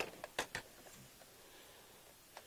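A few light plastic clicks and knocks in the first half second as a Nerf Vortex Proton toy blaster is picked up and handled, then faint room tone.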